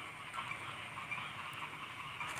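Faint steady background hiss with no distinct sounds.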